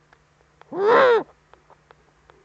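Eurasian eagle-owl giving a single loud call of about half a second, just under a second in, its pitch rising and then falling. A faint low hum and light ticking sit underneath.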